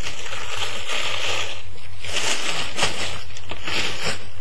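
Tissue paper and plastic wrapping rustling and crinkling in uneven bursts as hands unwrap a shoe in its box.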